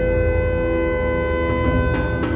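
Intro music: a sustained held chord over a low drone, with no change in pitch, in a dark orchestral theme.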